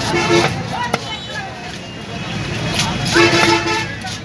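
A horn sounds two short, steady toots about three seconds apart, the second the louder, over voices and market noise. About a second in, a single sharp knock is a cleaver chopping through fish onto a wooden block.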